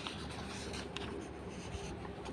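Paper pages of a book being turned by hand, rustling, with a few short crisp crackles as the sheets flip over.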